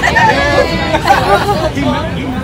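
Several people talking at once: overlapping chatter from a small group.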